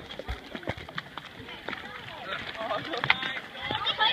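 Indistinct voices in the background, with a few short, sharp knocks scattered through.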